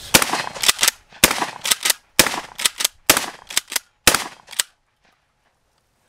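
Mossberg Shockwave 590M 12-gauge pump-action firing five shots of 8-shot target loads, about a second apart, each shot followed by the clack of the pump being racked.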